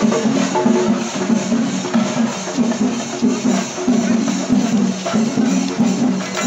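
Drum-led percussion music playing in a dense, steady rhythm, with sharp clicking strokes over a deeper repeated beat.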